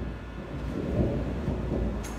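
A low rumbling noise with no speech, swelling briefly about halfway through.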